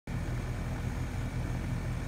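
Outdoor air-conditioning condensing unit running steadily, its compressor and condenser fan giving a constant hum; the system is running low on refrigerant while it is being charged.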